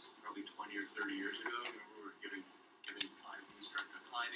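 A man's voice lecturing, with two sharp clicks close together about three seconds in, over a steady hiss.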